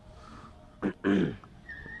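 A man clears his throat once, briefly, a little under a second in. A faint, thin, high steady tone follows near the end.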